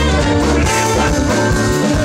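Live band playing an upbeat instrumental passage without vocals: trombone and saxophone with accordion, guitar and drum kit.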